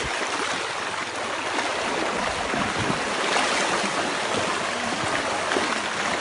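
Fast, muddy river water rushing through rapids: a steady, even rush of churning water.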